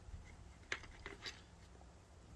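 Faint low background rumble with two small clicks about half a second apart, a little under a second in.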